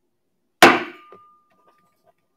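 An auctioneer's gavel knocks once on the wooden rostrum about half a second in, a single sharp knock that dies away quickly: the hammer falling to close the sale of the lot.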